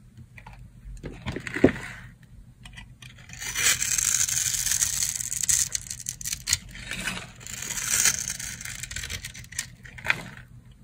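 Craft-knife blade cutting dry, hard bar soap that is scored into a grid, so small cubes crunch and crumble off the bar. A single sharp tap comes about a second and a half in, then steady crunchy scraping runs for most of the rest.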